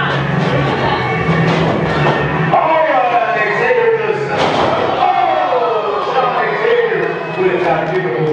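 A wrestler's body slammed onto the ring canvas with one sharp thud about halfway through, under continuous shouting voices from the crowd.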